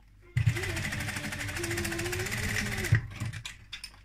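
Electric sewing machine stitching fast through cotton mask fabric for about two and a half seconds, then stopping abruptly. A few light clicks follow.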